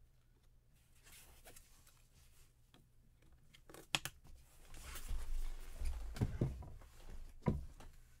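Gloved hands handling a trading card and a clear plastic card holder: faint rustling, a sharp click about four seconds in, then louder handling with several clicks and dull knocks as the card is closed into the case and set down.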